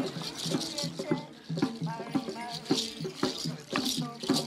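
Ceremonial music: hand rattles shaken in quick strokes under a voice chanting in held notes.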